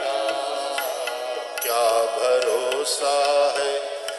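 Male voices singing a Hindi devotional bhajan, with musical accompaniment.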